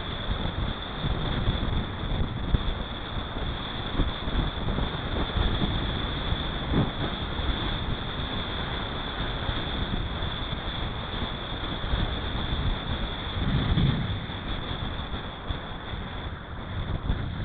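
Wind rushing over a bike-mounted camera's microphone on a fast road-bike descent: a steady rumble with gusts, over a constant high hiss.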